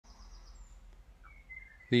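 A few faint, thin, high chirps over a low background hiss, then a man's voice starts speaking at the very end.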